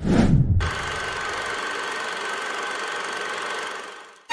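Logo-sting sound effect: a sudden deep boom that drops in pitch, followed by a steady rumbling drone that fades out near the end.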